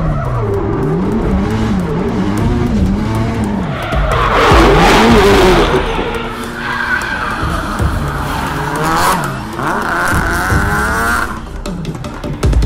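Turbocharged 2.0 L SR20DET four-cylinder in a Nissan S13 240SX drift car, its revs rising and falling over the first few seconds. Then the tyres skid and squeal in long stretches, the loudest near the middle.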